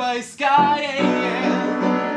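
A man singing a held, wavering line over upright piano chords; the voice stops about a second in and the piano carries on alone.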